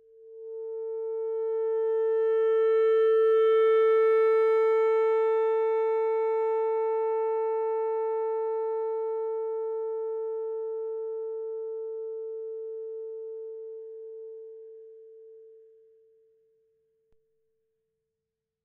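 Alto saxophone playing one long note at a steady pitch. It swells to full volume over about four seconds, then fades slowly and dies away near the end. This is a swelling-and-fading long tone, a warm-up exercise for feeling the airstream.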